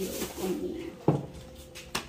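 Low, flat cooing of a bird early on, then a single sharp knock about a second in.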